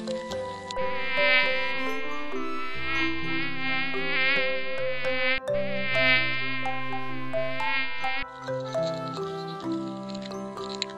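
A flying insect's wing buzz, high and wavering in pitch, over soft background music. The buzz breaks off briefly about five seconds in and stops a little after eight seconds.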